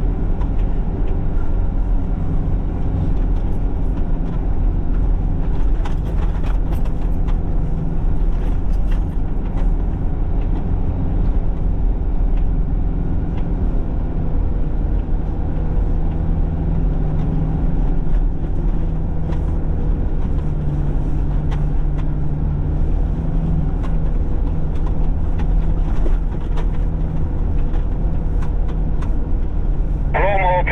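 Steady low drone of a Mitsubishi Pajero Sport driving on a snow-covered road, its engine and tyre noise heard from inside the cabin. Scattered light clicks and knocks come through, mostly in the first ten seconds.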